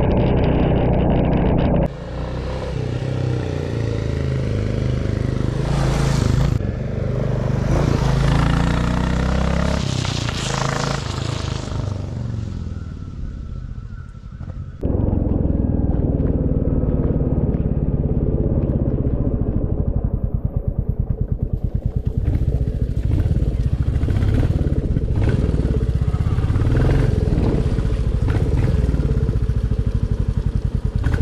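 Royal Enfield Classic 350's single-cylinder engine running while the motorcycle is ridden, mixed with wind noise on the microphone. The sound changes abruptly about two seconds in and again about halfway through, after which the exhaust's rapid, even beat is prominent.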